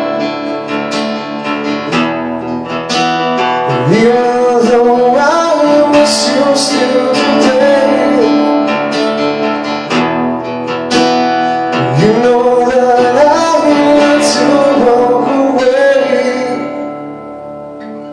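Two acoustic guitars strummed and picked together in a slow song, with a man's voice holding long wordless sung notes that slide upward twice. The playing softens near the end.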